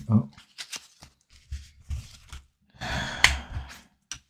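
Tarot cards being handled: a few faint taps, then a longer sliding rustle with a sharp click about three seconds in as a card is drawn from the deck and laid on the table cloth.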